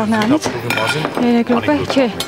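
Pots, pans and metal utensils clinking in a handful of sharp knocks as food is prepared, with voices talking over them.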